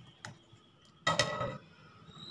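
Wire whisk clicking lightly against a glass bowl while stirring semolina cake batter, then one louder ringing clink about a second in.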